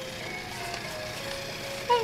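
Simple electronic melody playing from a baby bouncer's light-up toy bar, one thin note after another. A short, louder sound breaks in right at the end.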